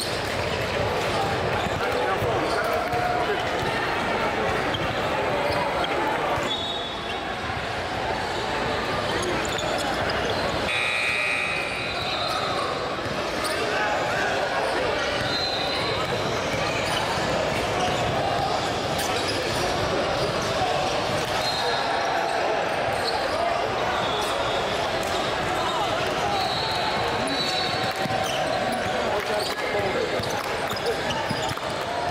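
Basketballs being dribbled on a hardwood gym floor amid the chatter of players and spectators, echoing in a large hall, with short high squeaks now and then.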